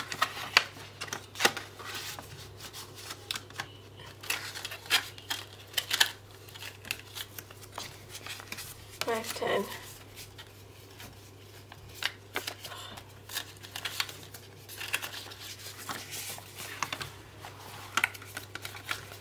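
Polymer banknotes and plastic binder sleeves being handled and counted by hand: a string of short, irregular rustles, flicks and crinkles, over a steady low hum.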